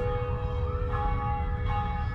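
A large bell ringing with long, slowly fading tones that overlap as it is struck again, over a low rumble.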